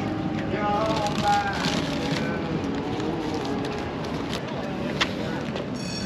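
Background chatter of people nearby, faint and without clear words, over steady outdoor noise, with a single sharp click about five seconds in.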